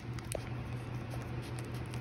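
Faint crinkling and small clicks of a foil sachet being handled with scissors at its edge, over a low steady hum.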